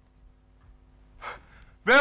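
Quiet room tone with one short, sharp intake of breath about a second in. Just before the end, a man's voice breaks in loudly as he starts calling out a greeting.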